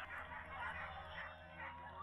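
Faint outdoor crowd murmur with scattered faint yips from excited corgis waiting to race.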